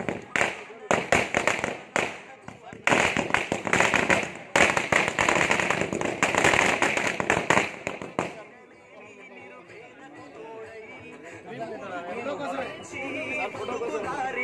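A string of firecrackers crackling in a rapid, loud run of sharp cracks for about eight seconds, then stopping; crowd chatter carries on after.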